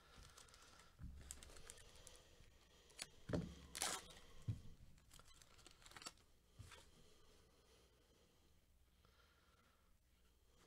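Faint tearing and crinkling of a foil trading-card pack wrapper as it is pulled open, with cards sliding against each other. A handful of short rustles, the loudest a little over three seconds in.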